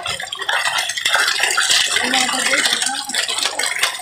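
A net crowded with live milkfish thrashing and splashing at the water's surface: a dense, continuous crackle of many small splashes and flapping bodies.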